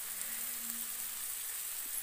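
Onion-tomato masala sizzling steadily in hot oil in a steel kadhai.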